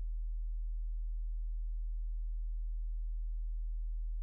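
A steady low hum: a single pure tone near 50 Hz at an even level, with nothing else over it.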